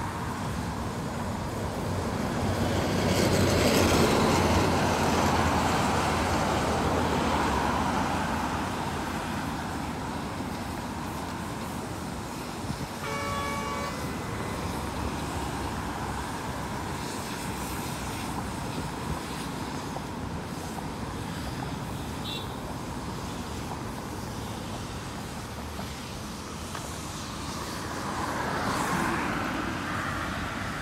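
Traffic on a multi-lane road: vehicles passing close by, the loudest about four seconds in and another near the end, with a short vehicle horn toot about thirteen seconds in.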